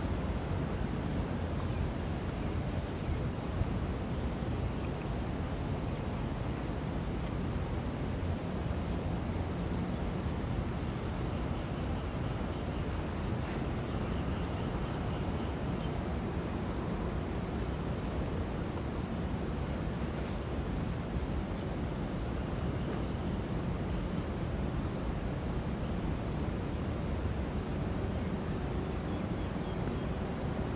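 Steady wind noise on the microphone, strongest at the low end and even from start to finish.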